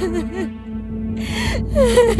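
A woman crying: short wavering sobs broken by two sharp breaths, the louder one near the end, over a steady held note of background music.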